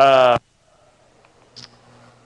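A man's voice making a short, wavering filler sound, an 'ehh' about a third of a second long, at the very start; then only quiet room tone with a faint tick.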